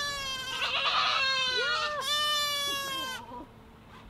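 Nigerian Dwarf goat bleating: two long, high calls, the second starting about two seconds in.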